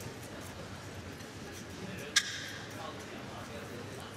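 Badminton arena ambience: a steady low murmur of the crowd in a large hall, with one sharp smack about two seconds in.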